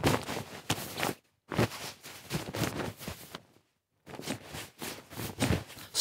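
Clothing foley made with Krotos Reformer Pro's jacket foley preset: fabric rustles and jacket movement, played back as several irregular bursts with short pauses between them. The bursts are driven by a spoken count, and none of the voice comes through.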